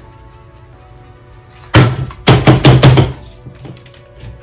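A quick run of about six loud knocks, roughly four a second, from a nickel-plated metal serving tray being handled against a tabletop. Faint background music plays throughout.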